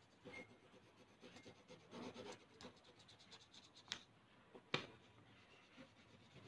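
Faint scratching of a colour pencil shading back and forth across paper laid over a leaf, making a leaf rubbing. Two short, sharp clicks come just before and just after the middle.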